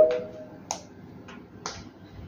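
An edited-in sound effect for an animated TikTok search bar: the tail of a pitched chime fades out in the first half second, then a few sparse, soft clicks like keystrokes as a username is typed into the bar.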